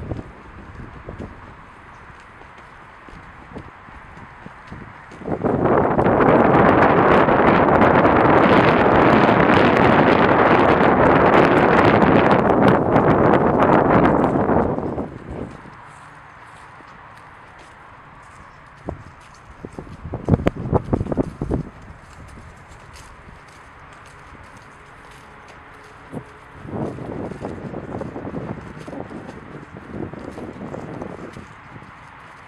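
Wind blowing across a camera microphone. A loud gust starts suddenly about five seconds in, holds for about ten seconds and then drops away, leaving quieter wind noise. Footsteps knock a few times in the later part.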